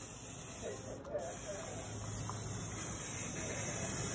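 Aerosol hairspray can spraying in a steady hiss, with a brief break about a second in.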